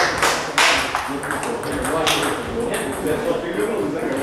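Sharp clicks of a celluloid table tennis ball bouncing, a few times early on, over background voices.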